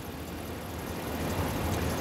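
5.7-litre Hemi V8 of a 2012 Ram 1500 idling smoothly, heard with the hood open: a steady low hum that grows slightly louder toward the end.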